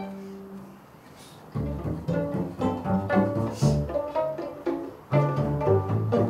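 Small string ensemble of violins, cello and double bass: a held chord dies away in the first second, then after a short near-quiet pause the strings play a run of short plucked pizzicato notes with the double bass and cello prominent, breaking off briefly and starting again near the end.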